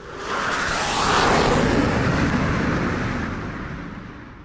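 A rushing whoosh sound effect from an animated title intro. It swells within the first half second, is loudest about a second in, and slowly fades away.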